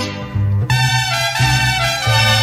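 Mariachi band playing an instrumental passage of a ranchera, trumpets over a strummed and bowed string backing with a steady bass. The sound is thinner and a little quieter at first, then the full band comes in sharply under a second in.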